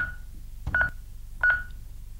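Honeywell Lynx Touch L5200 alarm panel beeping as its touchscreen keys are pressed: three short, identical high beeps, evenly spaced about two-thirds of a second apart.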